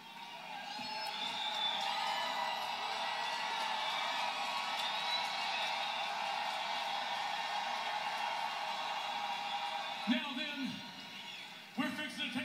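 Large arena crowd cheering and whooping, a steady mass of voices that swells over the first second or two. Near the end a man starts speaking into a microphone. Heard through a television's speaker.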